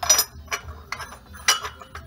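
Green glazed ceramic lid clinking against its ceramic dresser jar as it is set on and turned. There are several light clinks: a pair right at the start, a few softer ones, and another sharp one about one and a half seconds in.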